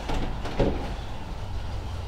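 Outdoor ambience with a vehicle engine running, a steady low rumble. A brief louder sound comes about half a second in.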